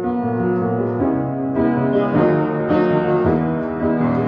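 Piano playing slow held chords, with a new chord or note about every half second; the player calls this piano completely detuned.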